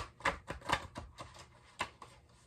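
A deck of cards being handled against a table: a quick, irregular run of about eight sharp clicks and taps, spread over two seconds.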